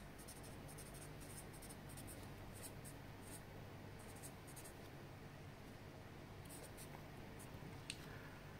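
Felt-tip marker writing on paper: faint scratchy strokes in short runs, with a pause of about two seconds before the last few strokes.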